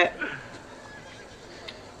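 A horse whinnying faintly in a TV drama's soundtrack, a thin high call in the first second that fades away.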